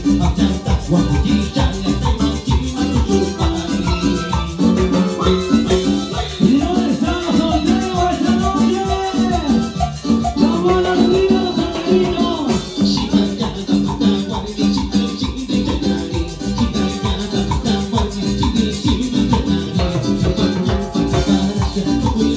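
Live band playing upbeat Latin dance music: keyboard and congas over a steady, driving beat, with a bending melody line through the middle.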